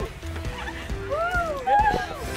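Background music with a person's high, drawn-out cry that rises and falls in pitch about a second in, a squeal from someone soaked with ice water.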